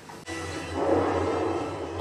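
Film soundtrack music: a low steady drone with a rushing swell that builds about a second in.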